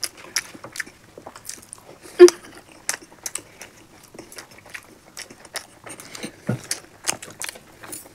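Close-miked eating during a timed speed-eating challenge: irregular wet chewing, mouth clicks and smacks as masala boiled eggs and biryani are eaten. About two seconds in there is one brief, louder throat or mouth sound.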